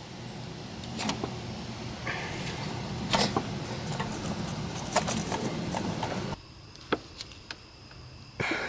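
A few light clicks and knocks from parts being handled in an engine bay, over a steady background hiss that drops away about six seconds in.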